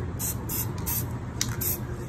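Aerosol spray-paint can sprayed in a few short hissing bursts, about four in two seconds.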